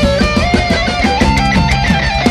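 Live heavy metal band playing: electric guitars play a riff and a held, bending lead line over fast, steady drum hits.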